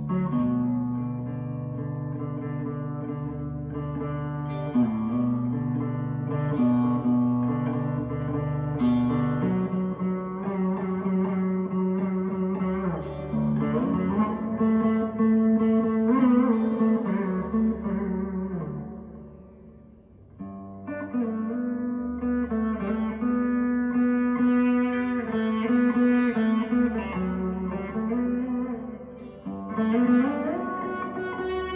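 Saraswati veena playing slow Carnatic phrases: long plucked notes with sliding pitch bends over a low sustained bass. The music fades to a lull past the middle, then picks up again.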